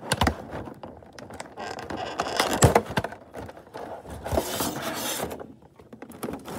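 Hands handling a toy figure in a clear plastic blister tray: irregular scrapes and a few sharp knocks of plastic. A brief crinkling rustle of the plastic comes about four and a half seconds in.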